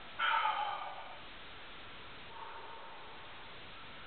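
A man's short strained grunt, falling slightly in pitch, just after the start, then a fainter strained breath about halfway through, from the effort of bending a 5/16-inch hex steel bar by hand.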